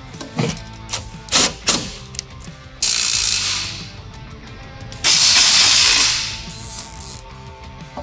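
Zip ties being pulled tight. A few sharp clicks come first, then three ratcheting zips of roughly a second each, about three, five and six and a half seconds in.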